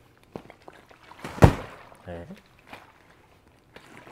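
A water-filled training bag swung into a handheld golf impact bag, landing with one heavy thud about a second and a half in.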